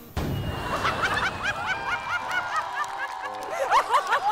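Crowd of people laughing together, breaking out suddenly just after the start, with many overlapping high-pitched giggles and squeals.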